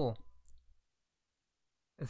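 The end of a spoken word, then one faint short click about half a second in, then dead silence.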